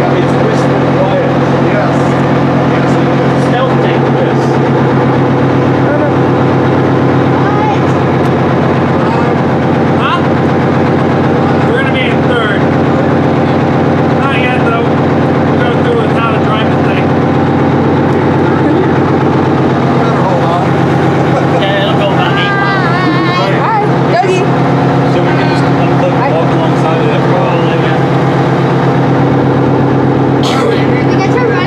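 A tank's freshly started engine running loudly at a steady, unchanging pitch, with voices raised over it now and then.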